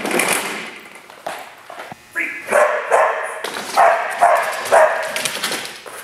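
A dog barking repeatedly, about six short barks in quick succession starting about two seconds in.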